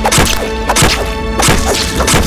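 Film sound effects of violent action: several sharp whacks, landing in quick pairs, with swishes, over a tense music score.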